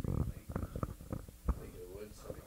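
Irregular low thumps and knocks, the loudest about a second and a half in, with a faint murmuring voice near the end.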